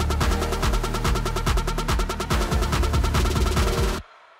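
Background music with a fast, dense drum beat over a steady bass, cutting off abruptly at the very end.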